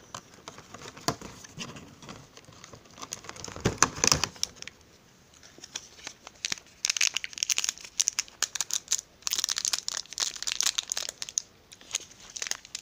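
Cardboard advent-calendar packaging and a sweet's foil wrapper being handled and opened: crinkling and tearing in several bursts, the loudest about four seconds in, then again around seven seconds and from about nine to eleven seconds.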